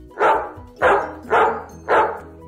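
A dog barking four times, roughly half a second apart, over background music.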